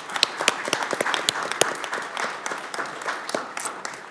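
A little round of applause: a roomful of people clapping by hand, thinning out near the end.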